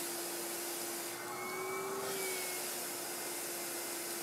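Vacuum cleaner running steadily with its hose nozzle being drawn through a cat's fur: an even rush of air over a steady motor hum. From about a second in, the hiss dulls and the motor note rises slightly for about a second, then settles back.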